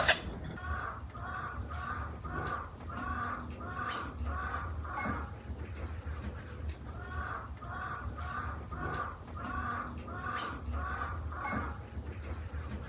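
A bird calling in two runs of about eight evenly spaced notes, roughly two a second, with a short pause between the runs.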